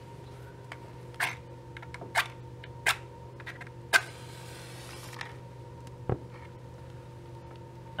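A match struck several times, sharp scratching clicks, the loudest about four seconds in followed by a short hiss as the match flares. About six seconds in, a single soft low thump as the spilled petrol (hexane) on a tile catches fire.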